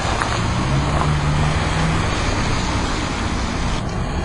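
Steady noise of car traffic along a street, with a low engine hum for a couple of seconds in the middle.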